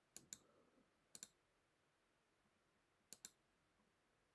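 Three quick double clicks of a computer mouse, spaced a second or two apart, in otherwise near silence.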